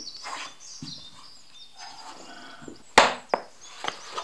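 Hard wooden clacks from a pair of wooden clogs being handled: one loud clack about three seconds in, followed quickly by two lighter ones.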